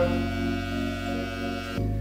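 Background music with steady held tones and no speech, changing abruptly near the end.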